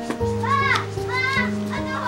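A girl's voice calling out in a few high, drawn-out phrases, over background music with steady held notes.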